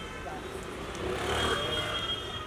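Street hubbub: indistinct voices and a low traffic rumble that swells in the middle, with a thin steady high tone coming in about halfway through.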